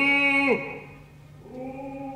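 A loud short vocal cry: the pitch swoops up into it, holds for just over half a second and drops away. A softer held note follows about a second and a half in.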